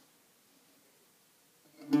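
Near silence, then a mandola's first plucked notes come in near the end, with a strong pluck just before the end, ringing on.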